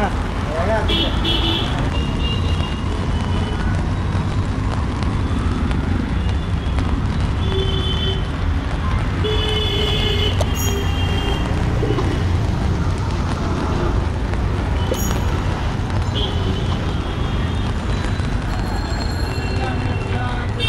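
Wet city street ambience: a steady rumble of traffic and tyres on the wet road, with several short vehicle horn toots, a few about a second in and more around eight to ten seconds.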